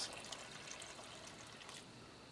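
Water trickling faintly from a glass jar onto a clay soil surface where it pools, tapering off toward the end.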